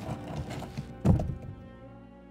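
A heavy stone being rolled across a tomb entrance, with a low grinding rumble that ends in one deep thud about a second in as it shuts. Sustained music with held notes plays underneath.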